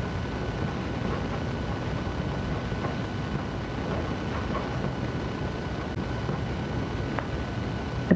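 Steady low rumbling background noise with a faint steady high-pitched whine, plus a soft tick near the end.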